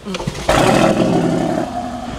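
Car engine starting about half a second in and running at raised revs, with laughter over it.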